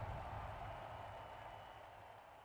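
The dying tail of a cinematic boom hit: a low rumble with a faint ringing tone, fading away steadily.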